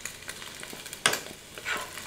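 Diced bacon sizzling in a skillet of its own grease, nearly done, while a metal spoon stirs it, with a sharp scrape of the spoon against the pan about a second in.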